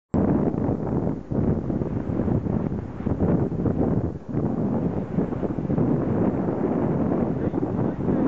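Wind buffeting the microphone on a boat under way at sea: a loud, gusty rumble that dips briefly twice.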